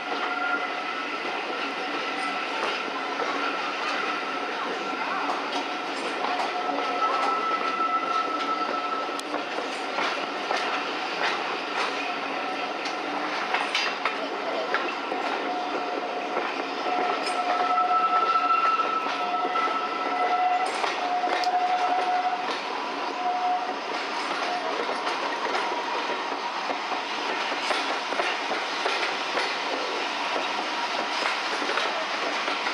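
Passenger coach rolling over jointed track and pointwork, wheels clicking irregularly over the rail joints, with a thin wheel-flange squeal on the curves coming and going, strongest around the middle.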